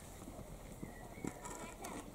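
An earthen cooking pot being handled and set onto a small wood-fired stove: a few faint knocks and clicks, the sharpest a little over a second in.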